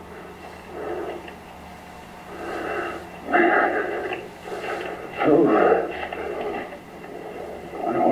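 Indistinct, muffled voices in a few short bursts, too unclear to make out, over a faint steady electrical hum.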